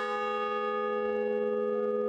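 A large bronze bell ringing after being struck once: one long ring of several overlapping tones at a steady level.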